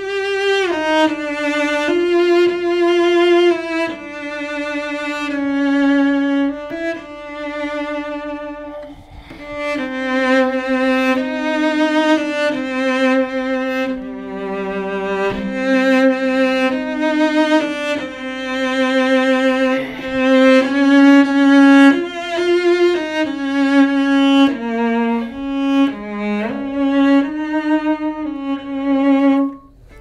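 Upton cello played solo with the bow: a slow, singing line of held notes with vibrato, mostly in the instrument's middle register. There is a short breath of a pause about nine seconds in, and at times two strings sound together.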